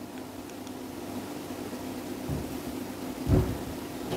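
Quiet room tone: a steady low hum, with a soft low bump about two seconds in and a short, louder low thud about three seconds in.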